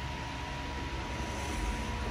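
Steady background room noise: a low hum and hiss with a faint, thin steady tone running through it.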